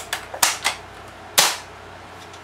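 AGM 96 spring-powered bolt-action airsoft sniper rifle being handled: several sharp mechanical clicks in the first second, then one louder, sharper snap about a second and a half in.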